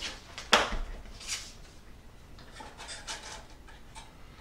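Small handling sounds of black cardstock being held and fitted against the laser-cut wood walls of a model building: a sharp tap about half a second in, then soft rustles and light scrapes.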